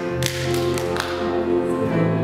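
Women's chorus with piano holding steady notes, with a handful of sharp taps over the music in the first second.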